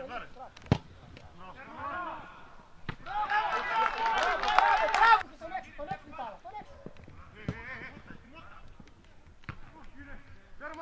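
Voices shouting during play on a football pitch, loudest from about three to five seconds in. A sharp thud of the football being kicked comes about a second in.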